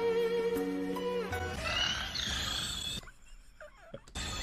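Anime soundtrack music with held notes, joined about a second and a half in by a rough, roar-like creature sound. Everything cuts off suddenly about three seconds in, leaving near silence.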